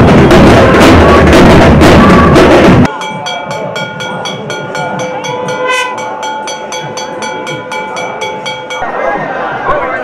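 Loud, fast, steady drumming that cuts off abruptly about three seconds in, followed by quieter music of several held tones over an even ticking beat, with crowd voices near the end.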